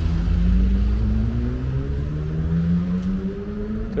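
A small hatchback car driving past close by, its engine note climbing steadily as it accelerates away, over a low road rumble.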